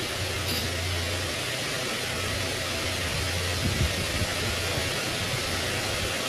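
Steady background noise: an even hiss over a low hum, of the kind a running electric fan or air conditioner makes in a room, with a few faint clicks a little before the four-second mark.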